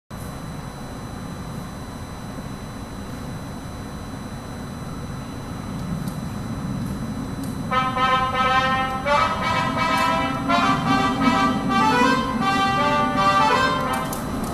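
Low rumble of a subway train approaching through the tunnel, slowly growing louder. About eight seconds in, the station's public-address approach melody starts over it, a tune of several stepped notes that signals a train is arriving.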